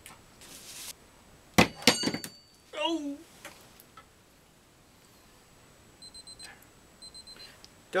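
A digital kitchen timer's alarm beeping in two quick runs of high, even beeps near the end, signalling that the seven-minute etch is up. Earlier, loud knocks and clatter as things are handled on the table, then a brief vocal sound.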